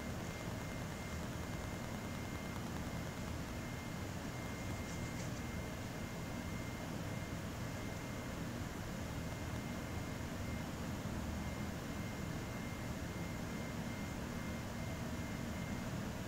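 Steady low background noise: room tone, an even hiss and hum with a faint thin high tone running through it. It has no distinct events.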